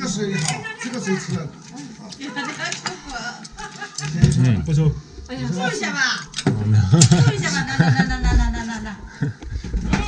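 Several people talking, with some laughter and a few sharp clicks.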